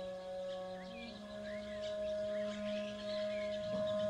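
Soft background score holding a sustained chord of long, steady notes, with a few faint bird chirps scattered through it.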